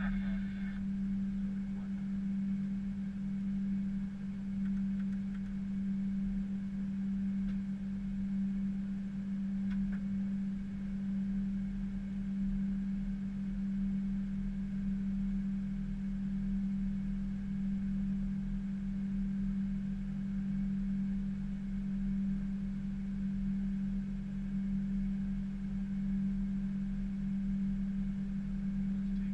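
Steady hum at one low pitch inside an Airbus A320 cockpit while the aircraft taxis, with a faint low rumble beneath it.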